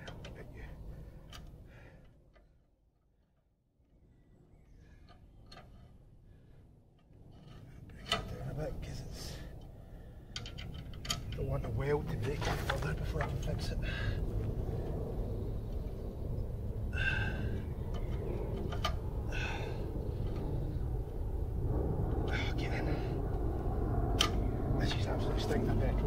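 Hecht 746 petrol tiller's small engine being tested: a few quiet handling clicks, then a sharp pull about eight seconds in, after which the engine runs steadily from about eleven seconds on, with occasional clatters on top.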